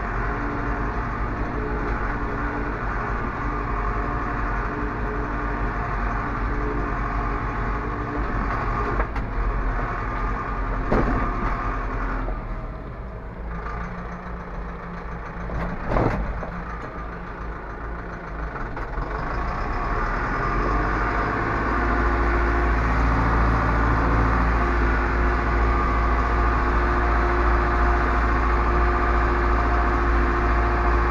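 Zetor Proxima 65 tractor's diesel engine running while working with a cultivator. About halfway through, it eases off for several seconds, with two sharp knocks. It then revs back up and runs steadily and louder.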